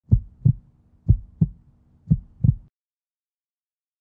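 Heartbeat sound effect: three deep lub-dub double thumps, about a second apart.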